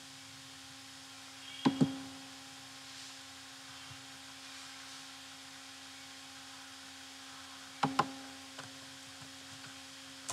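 Computer mouse clicking: a quick double click a little under two seconds in and another near eight seconds, with a faint tick after it, over a steady low electrical hum.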